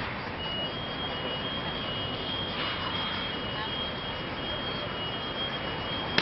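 Steady city traffic noise, with a high, thin whine on two close pitches coming in about half a second in and holding.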